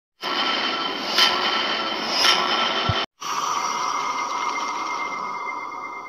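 Edited intro sound effect: a loud, hissing whoosh of noise with faint steady tones in it. It swells twice, breaks off about three seconds in, and then a second rush starts and slowly fades.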